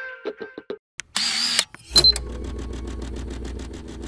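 The tail of brass jazz music, then a brief hiss and a click, and an engine starting and idling with a steady rapid throb, about nine pulses a second.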